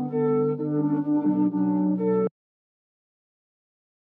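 Synthesizer sound playing a short phrase of held chords. The notes change about a second in, and the sound cuts off abruptly just after two seconds.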